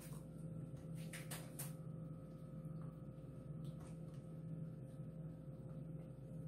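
Quiet room tone: a steady low electrical-sounding hum, with a few faint clicks in the first two seconds.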